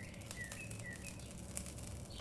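A filled mung-bean wrap frying in a nonstick pan: a faint sizzle with scattered light crackles. Several short high-pitched chirps sound over it in the first half.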